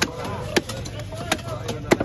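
Large chopping knife striking through fish onto a round wooden chopping block: four sharp chops, roughly every half second to three quarters of a second.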